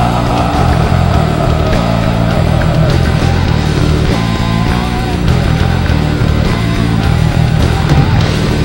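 Heavy metal band playing live: distorted electric guitars, bass and drums, loud and dense, with a long high note held over roughly the first three seconds.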